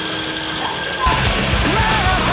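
Whirring of a Mini 4WD car's small electric motor and gears, then about a second in loud rock music with a heavy beat comes in over it.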